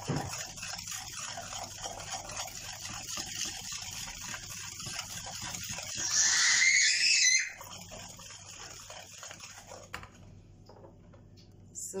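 Wire whisk beating eggs and sugar in a plastic bowl by hand: a quick, steady clatter and slosh of batter. About six seconds in, a louder high-pitched sound lasts a second or so; the whisking then dies down and stops, with a click near the end.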